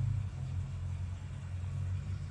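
Steady low background hum with no other distinct sound.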